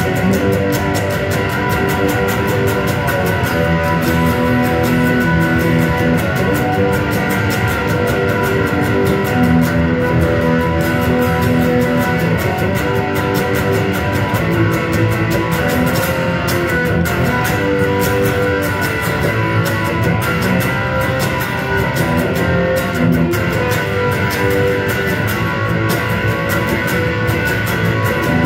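Electric guitar playing continuously, ringing chords that change every second or two, with many short picked strokes.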